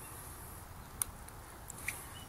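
Faint outdoor background rumble with a single sharp click about a second in and a smaller one near the end, as the power switch on an electric RC buggy is flipped on.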